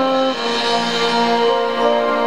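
Alto saxophone solo playing a slow melody of long held notes, changing pitch about a third of a second in and again near a second and a half.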